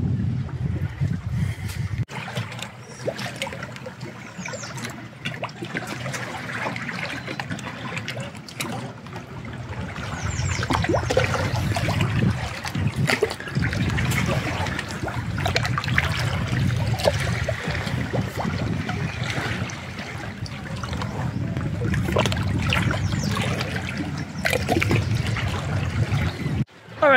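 Small waves of clear lake water lapping and trickling among shoreline rocks, an irregular patter of little splashes over a steady low rumble.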